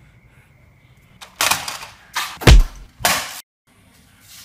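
A quick volley of about four gunshots from a gunshot sound effect, starting about a second in. The third shot is the loudest, with a deep boom. The sound cuts off abruptly near the end.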